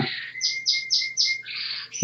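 A small bird chirping: a quick run of about five short, high notes, followed by a brief, harsher sound near the end.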